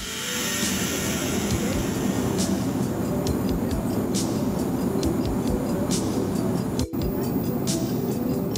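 Soundtrack music with a ticking beat over a loud, steady roar, breaking off for an instant about seven seconds in.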